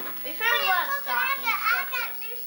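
A young child's high-pitched voice chattering, without clear words, its pitch sweeping up and down.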